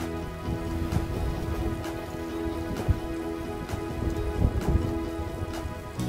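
Background music with soft held chords, over a steady crackling, hissing noise.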